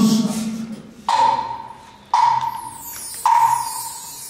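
Three evenly spaced percussion strikes with a short ringing pitched tone, about a second apart: a band's count-in just before the music starts. A man's voice trails off at the start.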